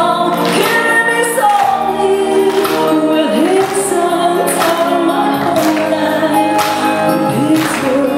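A woman singing live into a microphone through a PA, over backing music with a steady beat of about one hit a second. Her voice slides in pitch twice, about three seconds in and near the end.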